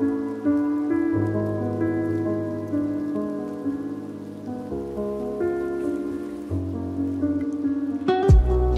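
Lofi music: soft, slowly changing sustained chords with no clear beat, over a rain-sound texture.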